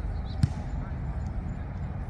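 Outdoor ambience with a steady low rumble and one sharp, dull thump about half a second in, amid faint distant voices.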